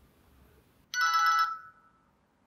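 Maxcom MM917 feature phone playing a short preview of one of its built-in ringtones through its speaker as it is scrolled to in the ringtone list: a bright chime of several steady tones held together for just under a second, starting about halfway in.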